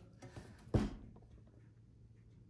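A single short, sharp knock about three-quarters of a second in, with a few faint ticks before it, then near silence.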